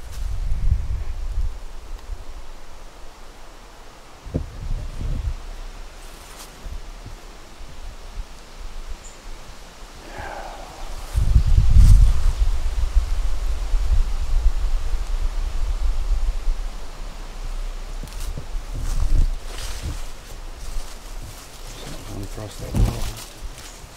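Wind gusting over the microphone and rustling the forest leaves, in surges, with the strongest gust about halfway through.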